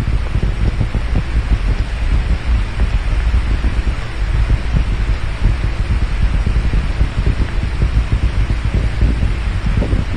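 Saturn V rocket engines heard from afar during ascent: a continuous low rumble with a ragged, crackling texture.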